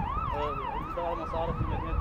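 A siren in a fast yelp, its pitch swinging up and down about three times a second.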